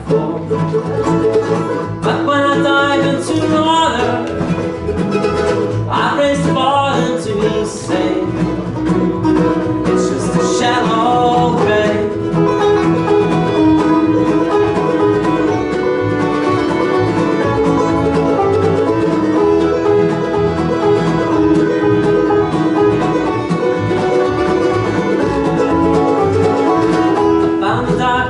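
Acoustic bluegrass-style string band playing an instrumental break: banjo picking over guitar, mandolin, fiddle and upright bass.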